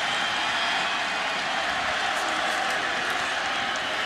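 Steady crowd noise from a large football stadium crowd, an even wash of many voices with no single sound standing out.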